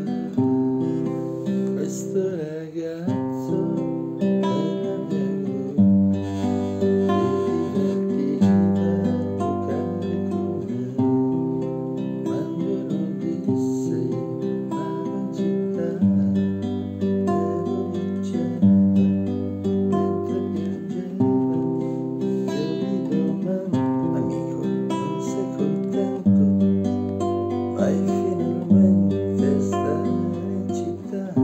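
A man singing while strumming chords on a nylon-string classical guitar, the chords changing every second or two.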